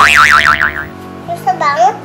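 A cartoon boing sound effect, a fast wobbling warble, over light background music, followed near the end by a child's short high-pitched voice.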